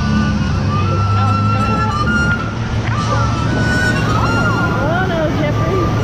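Rushing river water and wind buffeting the camera on a rapids raft ride, a loud steady rush with a deep rumble. Riders' voices rise and fall over it in the second half.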